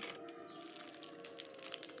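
Faint handling noise: scattered light clicks and rustles over a faint steady hum.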